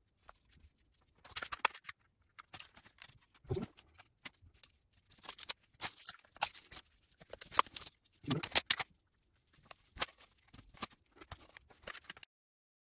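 Glued plywood pieces being fitted together and clamps set on them by hand: irregular light clicks, taps and knocks of wood and clamp parts, with brief scrapes.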